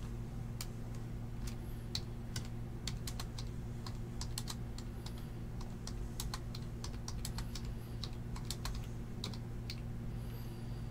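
Computer keyboard being typed on: irregular sharp key clicks, several a second, over a steady low hum.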